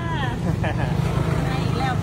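People talking, exchanging greetings, over a steady low rumble.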